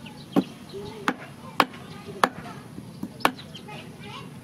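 Large kitchen knife chopping raw chicken feet on a wooden cutting board: a series of sharp chops, about five strong strokes, each roughly half a second to a second apart.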